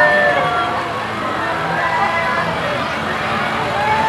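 Several people calling out and chattering, their voices overlapping and rising and falling, over the low running of a pickup truck's engine as it tows a parade float past.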